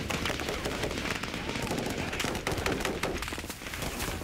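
Small-arms gunfire in a firefight: many shots in quick, irregular succession.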